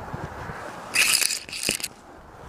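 Two short bursts of scraping and crackling right at the microphone, about a second in and again near the end, as the climber's body and camera brush against the bark of a conifer trunk.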